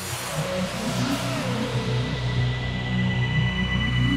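Cinematic soundtrack music swelling over the first second, then sustained, with a low pulsing engine-like rumble underneath and a thin steady high tone.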